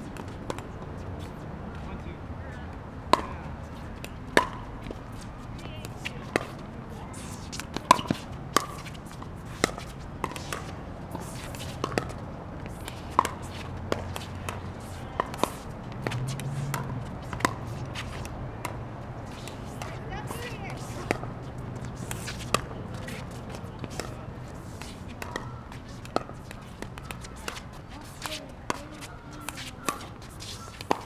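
Pickleball paddles hitting a plastic pickleball in doubles rallies: dozens of sharp, hollow pops at irregular intervals, often a second or less apart.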